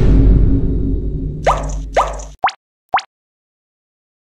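Rumble of an explosion sound effect dying away, with four quick rising 'plop' sound effects, the last two short and sharp, coming in after about a second and a half.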